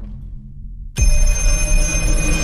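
An old rotary wall telephone's bell ringing, starting suddenly and loudly about a second in with a deep low thump, over a low droning trailer score.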